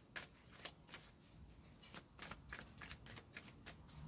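A tarot deck being shuffled by hand, heard as a faint, quick run of soft clicks and slaps as the cards fall against each other.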